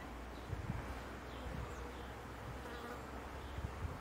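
Quiet outdoor ambience: buzzing insects over a steady low rumble, with a few faint bird chirps.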